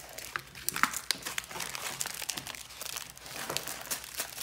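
Plastic packaging and paper crinkling and rustling as paint-by-number kit pieces (shrink-wrapped paint pots, a plastic brush packet, paper sheets) are handled and gathered up, with many short crackles and clicks, the sharpest about a second in.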